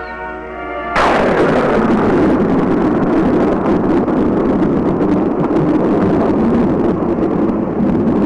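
A held music chord is cut off about a second in by a sudden, loud, continuous roar: the blast wave of an atomic test explosion sweeping over the trenches, on an old film soundtrack.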